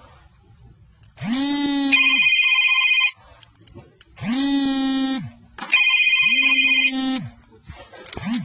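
Two rounds of loud electronic tones. In each, a held buzzy tone of about a second is followed by a higher, pulsing ring like a telephone's.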